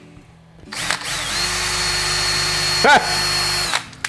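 Ryobi cordless drill running steadily for about three seconds as the bit bores through a plastic plate, with a brief rise and fall in pitch shortly before the motor stops. The bit is one the user judges the dullest in the set.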